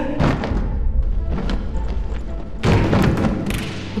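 Dramatic film-score music over a deep, steady low rumble, with sudden heavy thuds: one just after the start, a louder one about two and three-quarter seconds in, and another shortly after.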